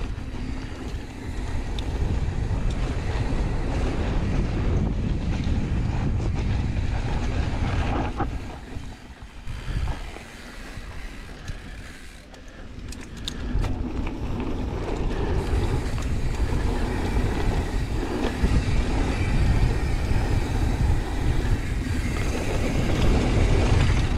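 Mountain bike descending a dirt trail, heard through an action camera: wind rushing over the microphone along with tyres rolling on dirt and the bike rattling. It drops quieter for a few seconds near the middle, with a few sharp clicks, then rises again as speed builds.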